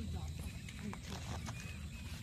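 Faint, indistinct voices in the background over a low steady rumble.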